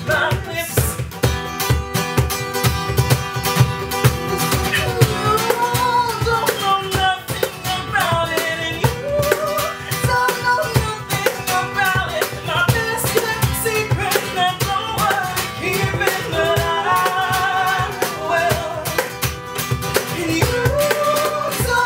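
Live acoustic music: an acoustic guitar strummed, a cajon slapped for the beat, and a voice singing the melody, with the other voices singing together near the end.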